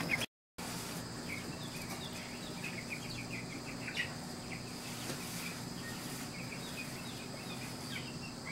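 Quiet outdoor ambience after a brief silent gap near the start: a steady high insect drone, with scattered faint bird chirps and a small click about four seconds in.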